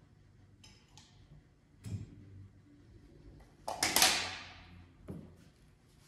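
Workshop handling noises from a caulking gun and a foam sign board: light clicks and a knock in the first two seconds, then a louder scraping clatter about four seconds in that dies away over half a second, and another knock near the end.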